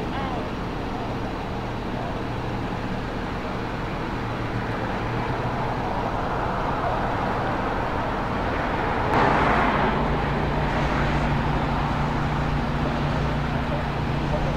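Street traffic noise with a steady low engine hum. A vehicle passes by, swelling from about six seconds in to a sudden louder burst at about nine seconds, after which a steadier, deeper hum carries on.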